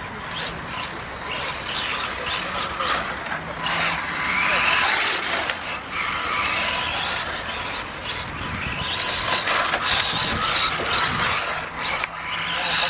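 Radio-controlled rally car driving on a dirt course, its motor and drivetrain whining up and down in pitch as it speeds up and slows through the corners, loudest in two spells a few seconds apart.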